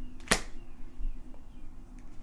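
A single quick swish-slap of a tarot card laid down onto the table, about a third of a second in.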